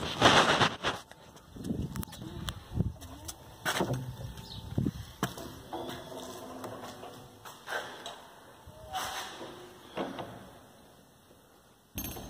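A wooden church door being pushed open and closed again, with several clicks and knocks from its handle and latch. A brief rush of noise comes at the start, and it falls quiet near the end.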